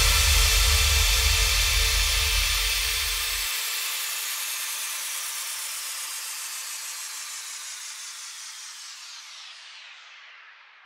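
Closing tail of an electronic dance track after the last beat: a noisy, falling sweep over a low rumble. The rumble stops about three and a half seconds in and the rest fades away steadily.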